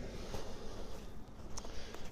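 Faint footsteps in packed snow, two soft steps about a second and a quarter apart, over a low steady rumble.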